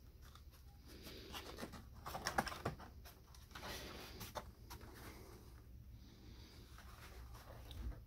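Faint handling noise of a cardstock papercraft figure and the camera: light crackly paper rustles and clicks, loudest in a cluster a little over two seconds in, over a steady low hum.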